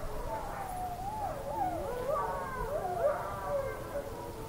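Several wolves howling together, their overlapping howls wavering and gliding up and down in pitch, with the most voices at once around the middle of the clip.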